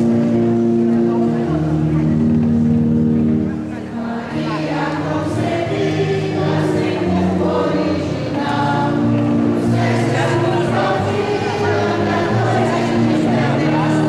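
Choir singing a slow hymn in sustained notes, with a short break between phrases about four seconds in.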